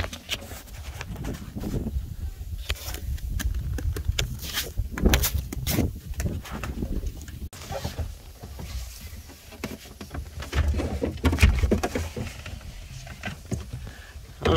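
Replacement glass window panel being handled and slid down into a skid steer's cab door frame: irregular knocks and taps of glass against the metal channel over a low rumble.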